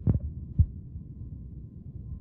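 Low steady hum with two deep thumps about half a second apart, opening the intro of a hip-hop track.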